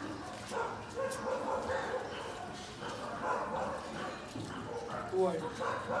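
Several people talking indistinctly at a moderate level, with short pauses and no clear single speaker.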